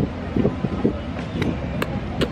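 Wind on the camera microphone with a steady low outdoor rumble. A few short murmured voice sounds come in the first second, and two brief clicks follow in the second half.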